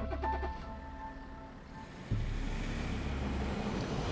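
Background drama score with sustained notes and a deep low pulse, over a car driving away.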